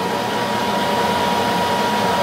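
Steady whirring machine noise with a constant high-pitched whine.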